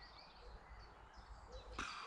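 Quiet outdoor background with faint bird chirps, and a short rush of noise near the end.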